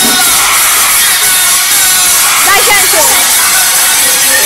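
Voices of a group of boys in a room, picked up through a phone microphone with heavy hiss; a gliding shout or whoop stands out about two and a half seconds in.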